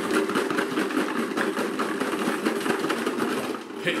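Ten small numbered balls rattling and clattering against each other and the inside of a clear jar as it is swirled, a dense run of fast clicks that stops just before the end.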